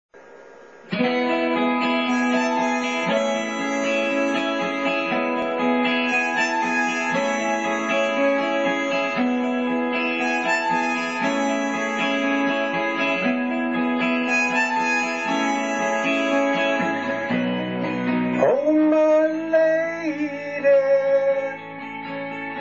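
Instrumental intro of a karaoke backing track, starting about a second in, with chords changing about every two seconds. Near the end the arrangement changes and a held note bends up and down.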